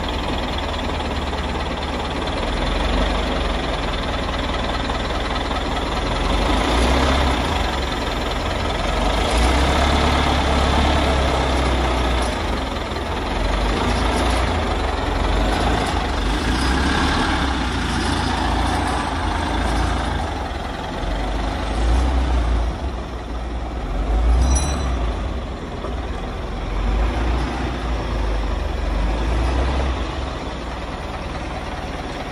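Caterpillar 950C wheel loader's diesel engine running with a deep rumble, its loudness swelling and easing several times.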